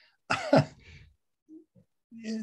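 A man coughs once, about half a second in, with a short fading tail after it.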